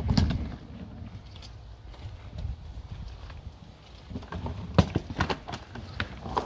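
Hard-shell rolling suitcase's small wheels rattling over a paver walkway, a continuous clatter of small clicks over a low rumble, with a few sharp clacks about five seconds in.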